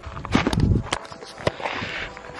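Handling noise from a handheld camera being moved about: a low rubbing rumble, a few light knocks, and a rustle near the end.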